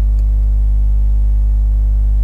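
Steady electrical mains hum, a loud low drone with a buzz of evenly spaced overtones, running unchanged with nothing else over it.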